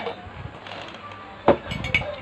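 Denim shorts being handled and stacked, with one sharp knock about one and a half seconds in and a few light clicks just after it.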